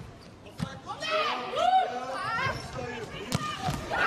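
Indoor volleyball rally: a few sharp smacks of hands and arms striking the ball, with sneakers squeaking on the court in between.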